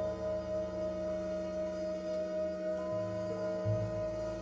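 Slow, spacious live jazz from a quartet of electric guitar, saxophone, double bass and drums: long notes ringing out, with one high note held steady throughout and soft low notes coming in near the end.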